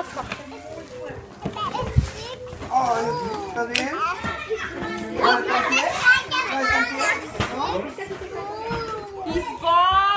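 Several young children's voices babbling, chattering and calling out over one another, with a couple of brief knocks.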